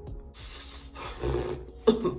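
Soft, noisy rustling, then a woman clearing her throat once, sharply, near the end.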